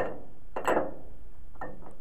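Handling noise from metal brake booster parts: a sharp click, a short rustle and a few light ticks as the parts are picked up and turned.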